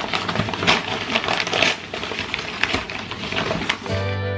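Large kraft-paper delivery bag being unrolled and opened by hand, the stiff paper crinkling and crackling irregularly.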